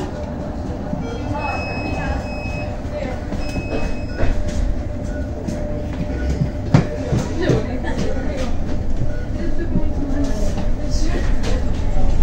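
Cabin noise inside a 2023 Zhongtong N12 battery-electric city bus: a steady whine over a low rumble, with knocks and rattles as it rolls over cobblestones, growing louder toward the end. Two short high beeps sound between about one and four seconds in.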